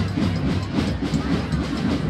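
Procession drums beating a fast, even rhythm, about seven beats a second, over crowd noise.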